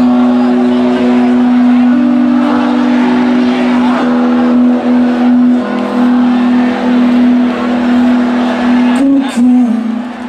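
Live rock performance in which an amplified electric guitar holds one long sustained note with its overtones, bending in pitch near the end.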